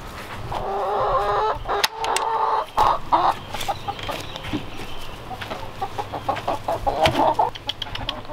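Chickens clucking, with drawn-out calls at the start, around three seconds in and near the end. A few sharp knocks come in between.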